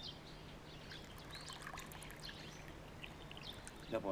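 Hot water poured faintly and steadily from a kettle into small glass teapots.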